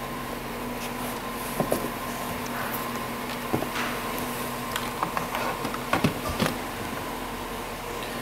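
A steady mechanical hum fills the truck's cab, with a few light clicks and taps from handling the tablet oscilloscope and its probe leads.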